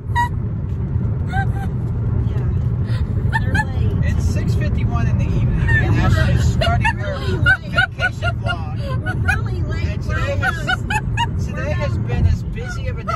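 Steady low road and engine rumble inside a moving car's cabin, with a woman laughing, busiest in the second half.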